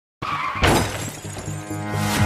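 Logo intro music that starts a moment in, with a sudden loud crash about half a second in, then carries on with held notes.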